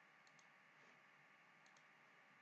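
Near silence with two faint pairs of computer mouse clicks, one about a quarter second in and one near the end.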